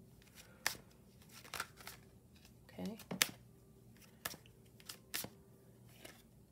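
A deck of tarot cards being shuffled by hand, with soft card rustling and a handful of sharp snaps of cards.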